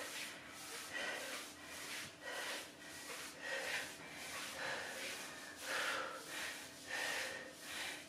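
A woman breathing hard and rhythmically from exertion mid-workout: short, forceful breaths, about two a second.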